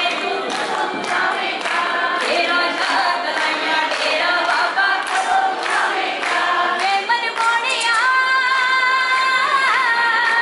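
Live devotional bhajan singing over amplified music with a steady beat, several voices singing together. From about seven seconds in, a long held, wavering sung line comes to the front.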